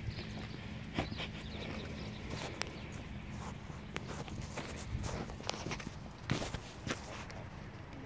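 Footsteps of people walking on a path: uneven steps and scuffs, with a few sharper knocks, the loudest about one second and about six seconds in.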